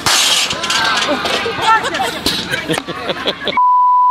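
Glass-shattering sound effect: a sudden loud crash with tinkling shards over voices. About three and a half seconds in, a steady high-pitched beep starts and holds.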